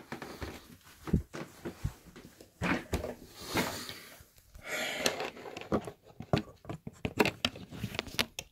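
Handling noise from a hand-held camera being carried and set down on a workbench: scattered knocks, bumps and rubbing, with a few breaths, and a cluster of sharp knocks near the end as it is put down on the bench.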